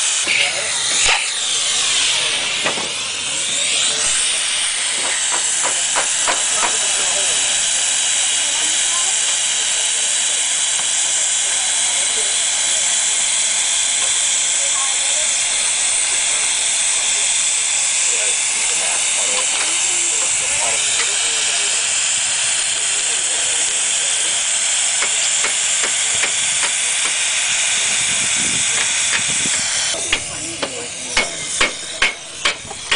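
Acetylene-fired soldering iron's burner hissing steadily while its hot copper tip is worked along a flat-lock copper seam, with a few light clicks.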